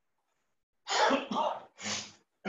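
A man coughing three times in quick succession, starting about a second in.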